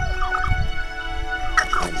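Poultry calling over soft background music: faint short falling calls about half a second in, then a louder quick falling call near the end.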